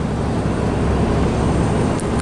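Steady low drone of a truck's engine and tyres on the road, heard from inside the cab while driving at speed.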